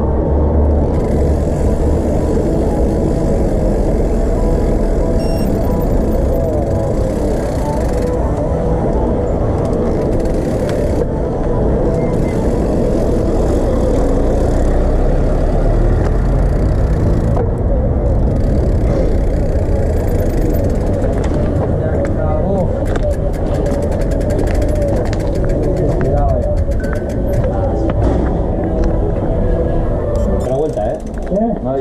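Wind rushing over an action camera's microphone and tyre noise from a mountain bike riding along a town street. In the last several seconds the rear hub's freewheel clicks rapidly as the bike coasts.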